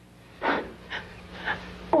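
A woman's tearful breaths while she cries: three short, shaky breaths about half a second apart, the first the loudest.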